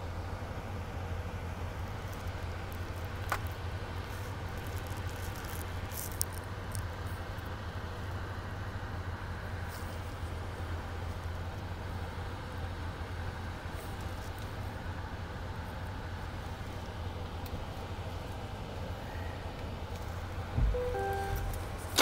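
2020 Chevrolet Corvette Stingray's 6.2-litre V8 idling steadily in park, heard from inside the cabin, with a short tone near the end.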